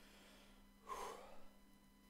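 Near silence, broken about a second in by one short, sharp breath from the tenor as he gets ready to sing.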